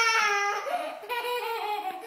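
A toddler's high-pitched, drawn-out vocal sound, held for about a second and then broken into shorter sounds.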